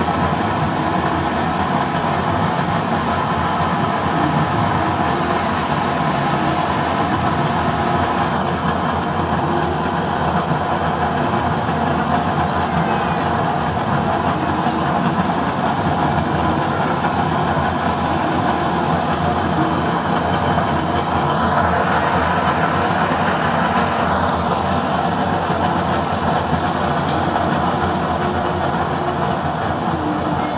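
Used-oil stove burner running with a blue flame, making a loud, steady rushing noise. The noise grows a little brighter for a few seconds about two-thirds of the way through.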